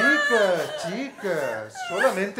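Women's voices whimpering and wailing in exaggerated, theatrical sobs, the pitch sliding up and down in short swoops.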